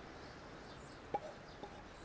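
A wooden spatula knocking lightly in a cast iron frying pan: one sharp tap about a second in and a softer one just after. Faint birdsong behind.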